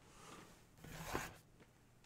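Faint rustle and scrape of cardboard trading cards being picked up off a tabletop, strongest about a second in.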